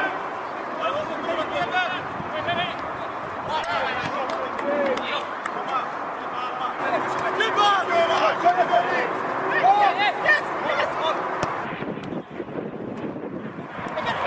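Voices shouting and calling during a football match, scattered and overlapping, over steady outdoor background noise.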